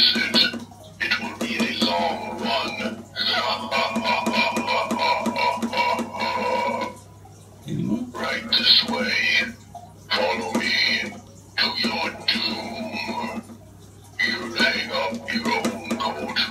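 Motion-activated animated skeleton butler playing its recorded spoken phrases over music, in several stretches with short gaps between, set off again by a wave of the hand.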